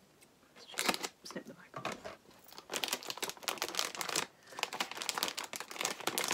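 Plastic snack packet being crinkled and tugged at, with dense runs of crackling starting about a second in and a brief pause just after four seconds: the tough packaging is being pulled and torn open.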